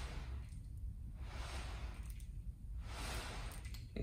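Wooden buzz saw toy (a button whirligig on a looped string) spun by pulling the string taut and letting it rewind: a whooshing whir that swells with each pull and fades, three times over.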